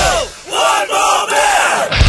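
A break in an oi punk song where the instruments drop out and a group of male voices shouts together in gang-vocal style.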